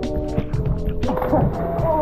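Background music with a steady beat. About a second in, a splash as a person jumps into lake water.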